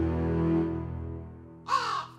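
A single loud crow caw near the end, over a sustained low music chord that fades out.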